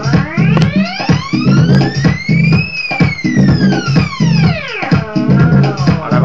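Electronic drum beat played from a turntable-mounted sampler, with a pitched sample sweeping steadily up in pitch and back down, like a siren, peaking about halfway through.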